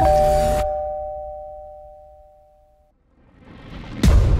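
A two-note bell-like chime, struck with a short hit, rings and slowly dies away over about three seconds. A rising whoosh then builds up toward the end.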